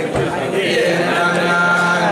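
A group of men singing a Hasidic niggun together, holding long notes and moving from one note to the next about halfway through.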